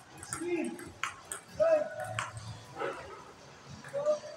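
Table tennis ball clicking off paddles and the table during a rally, with short, rising-and-falling whining cries over it.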